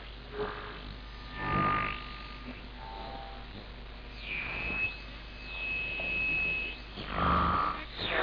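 Audion (regenerative) medium-wave radio receiver tuned between stations: a hissing background with whistles that glide down and up in pitch and settle into steady tones, and short swells of noisy broadcast sound.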